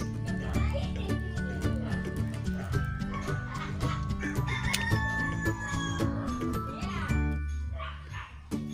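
Background music throughout, with a rooster crowing once about five seconds in.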